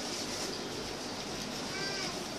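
Low murmur of a crowded hall, with a short high-pitched cry near the end whose pitch rises and falls.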